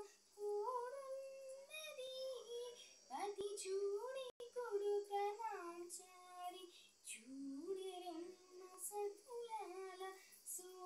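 A girl singing unaccompanied, holding long notes and sliding between them. The sound cuts out for an instant about four seconds in.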